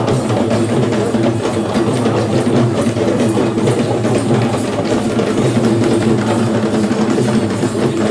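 Traditional Sri Lankan procession drumming by a group of drummers: a dense, continuous rhythm of many drum strokes.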